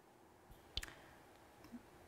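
Near silence: room tone, broken by a couple of faint clicks a little under a second in.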